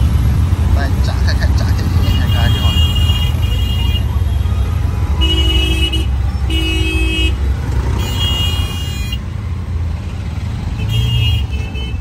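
Auto-rickshaw engine running under steady traffic rumble in the open cabin, with vehicle horns honking about six times in short blasts, the loudest near the middle.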